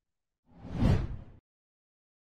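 A whoosh sound effect: one swell of rushing noise that builds and fades within about a second, marking a video transition to an animated title card.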